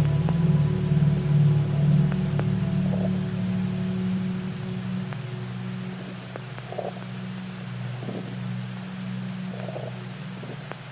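Experimental ambient music: a low drone that gradually fades, with a few higher held tones dying away a few seconds in, and sparse faint clicks and short soft blips over it.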